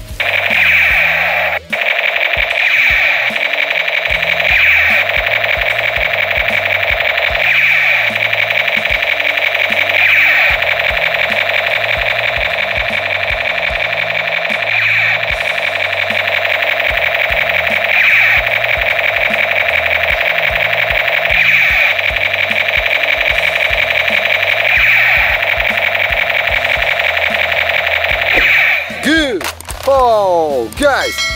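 Battery-operated toy M16 rifle's electronic firing sound effect: a loud, continuous buzzing rattle from its small speaker, swelling every two to three seconds, that cuts off about a second before the end.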